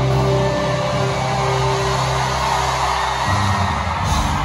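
Live band music played loud through an arena sound system, with held low chords that change about three seconds in.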